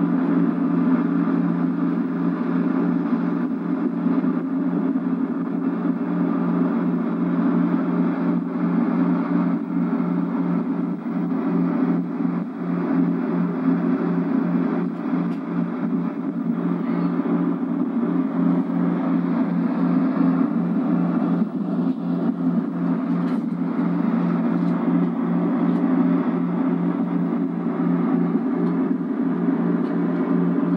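Tow boat's inboard/outboard motor running steadily at speed, a constant low drone with a fast even pulse, heard as played back through a TV speaker.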